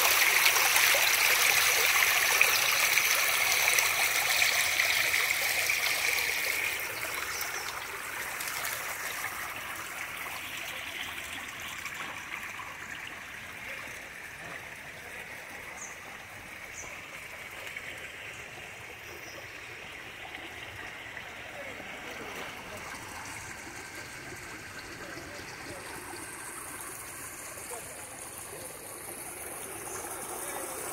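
Stream water rushing over rocks, loud at first and dropping after about seven seconds to a quieter, steady wash.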